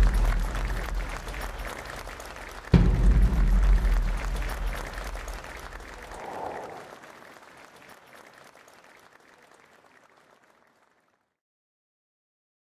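Booming cinematic impact hits closing the soundtrack music: a second heavy hit lands about three seconds in, and its deep rumbling tail fades out to silence by about eleven seconds.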